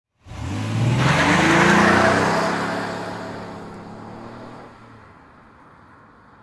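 Race car engine sound effect: the engine revs up suddenly with a rushing hiss, then holds its pitch and fades away over the next few seconds.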